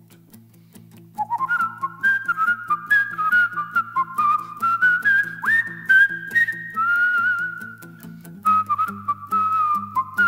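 A man whistles a melody over his own steady fingerpicking on a 12-string acoustic guitar. The whistled tune comes in about a second in, moves in held notes and slides up sharply once in the middle, while the guitar repeats its picked pattern underneath.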